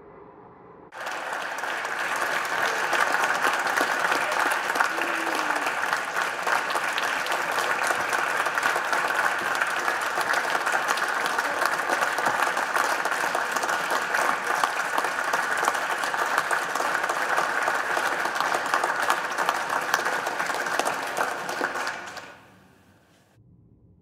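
Many people applauding together in a large hall. The clapping breaks out suddenly about a second in, holds steady, and stops near the end.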